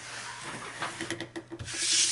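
A steel ruler and a plastic cutting mat scraping as they are slid across a gridded cutting-mat surface, with a few small clicks. Near the end comes a louder swish as the Cricut mat in its clear plastic cover is pulled across.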